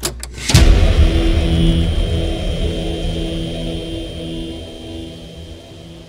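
Logo-sting sound effect: a sudden hit about half a second in, then a low, engine-like rumble with a pulsing hum that slowly fades out.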